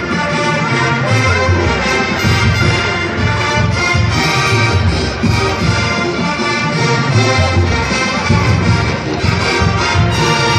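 Marching band playing brass-led music, heard from the stadium stands.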